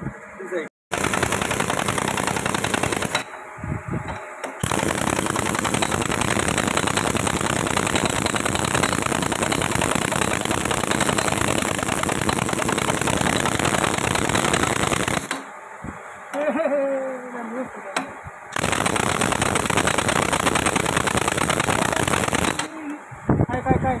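Impact wrench hammering on the nut of a puller's threaded rod, drawing a stuck power cell out of a hydraulic rock breaker's frame. It runs in three long bursts with short pauses between them.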